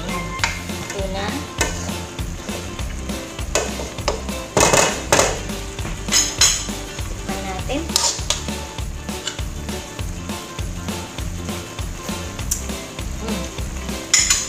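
Stir-frying in a large aluminium wok: a utensil scraping and clanking against the pan while cabbage and bean sprouts are tossed, with the loudest knocks clustered about five seconds in and a few more after. Background music with a steady beat plays underneath.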